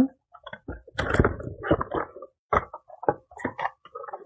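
Cardboard packaging scraping and rustling in irregular bursts, with small clicks and knocks, as a 120 mm PC fan is slid out of its white cardboard sleeve.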